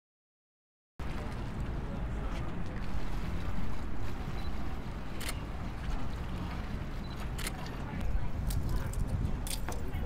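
The audio cuts out completely for about the first second. Then outdoor waterfront ambience comes in: a steady low rumble under faint voices, with a few sharp clicks.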